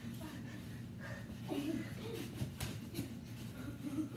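Children wrestling on a carpeted floor: scuffling and shuffling of bare feet and bodies, with a few short thumps about two and a half seconds in, heavy breathing and faint voices.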